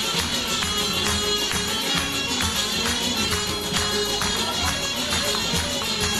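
Live Azerbaijani folk dance music: a tar and keyboard play over a frame drum beating a steady rhythm about twice a second, with the audience clapping along.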